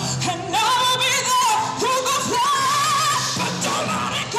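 A woman singing with a strong vibrato, holding a long wavering high note through the middle, over pedal harp accompaniment.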